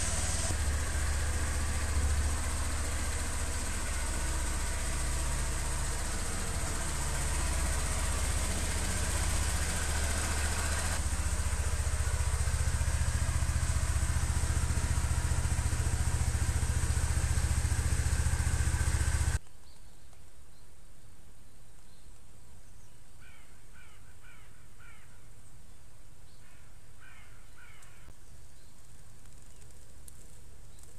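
Honda PCX125 scooter's single-cylinder engine idling steadily after a cold start, warming up, a little louder from about eleven seconds in. About two-thirds of the way through it cuts off suddenly to quiet outdoor background, with a bird giving two short runs of repeated calls.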